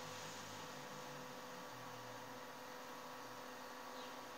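Low background noise of the recording: a steady electrical hum over faint hiss, with no other sound.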